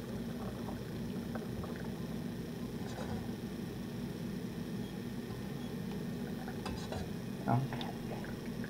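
Hot rose water draining through a metal sieve into a glass jar: a steady trickle, with a few faint clinks.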